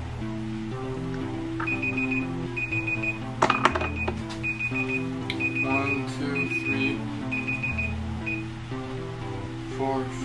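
A tablet's countdown-timer alarm beeps rapidly in repeated short bursts, about one burst a second, from about two seconds in until near the end: time is up. Background music with guitar runs underneath, and a short clatter comes about three and a half seconds in.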